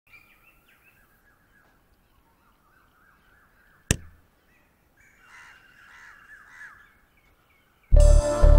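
Small birds chirping in short, repeated downward notes, with a single sharp crack a little before the middle and a louder run of harsher calls in the second half.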